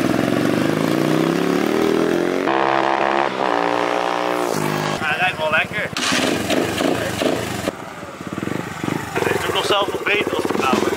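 Small single-cylinder four-stroke 150cc pitbike engine revving as the bike rides off, its pitch climbing over the first two seconds or so, then holding at a steadier pitch before the sound changes about halfway through to a busier mix of engine running and revving.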